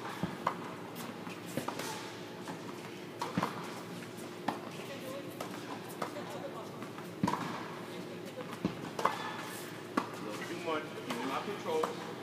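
Tennis balls being struck with rackets and bouncing on an indoor court: sharp pops at irregular intervals that echo in a large hall, with voices in the background.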